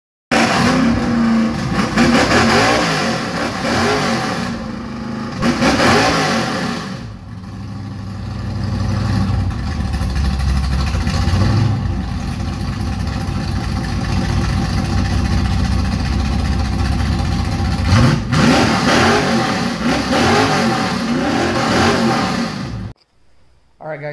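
Car engine revving up and down repeatedly, settling into a steadier, deeper run for about ten seconds, then revving again before the sound cuts off suddenly near the end.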